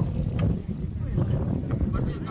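Wind buffeting the microphone in a dense low rumble, with faint voices from the players and spectators under it.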